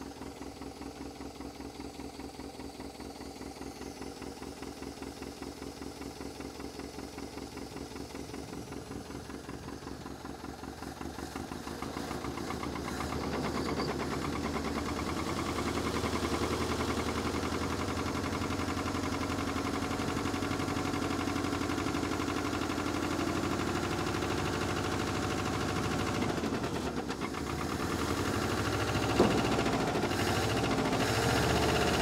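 International Scout 80's four-cylinder engine running after years of sitting, with an exhaust leak; it seems not to fire on all cylinders. It runs faster and louder from about halfway through as the throttle is worked at the carburetor, then holds steady, with a single sharp knock near the end.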